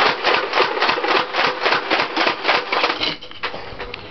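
Nerf Vulcan EBF-25 firing foam darts on battery-powered full auto: a rapid, even clatter of about six or seven beats a second over a faint motor hum. It stops about three seconds in as the belt runs out of ammo.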